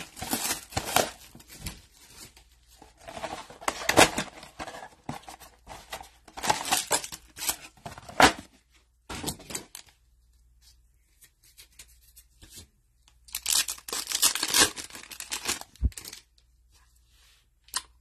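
Trading-card packaging being torn open, the cardboard blaster box and the packs' wrappers, with crinkling. It comes in several separate rips of a second or two, with a quieter stretch about halfway through.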